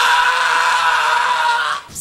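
A man's long, high yell held on one steady pitch, cutting off near the end.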